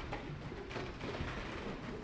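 A congregation sitting down in pews: a diffuse shuffle and rustle of people and clothing settling.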